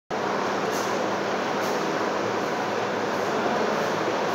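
Steady, even hiss of background noise at a constant level, with no speech.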